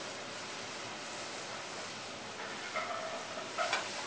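Mushrooms sizzling steadily in smoking-hot oil in a stainless steel sauté pan while they brown. Late on, the pan is lifted and tossed, with a few short metallic scrapes and a sharp clank of the pan on the gas burner grate.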